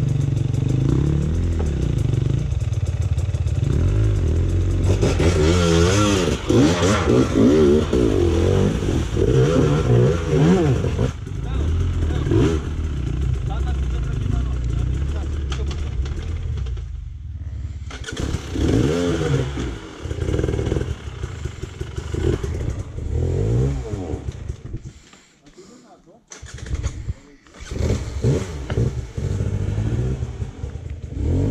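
Enduro dirt bike engine revving in repeated rising and falling bursts under load while climbing a steep rocky creek bed, dropping away briefly near the end before picking up again.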